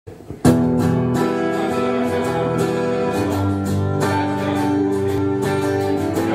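Karaoke backing track kicking in about half a second in: the instrumental intro of a pop song, with strummed guitar chords over a steady beat.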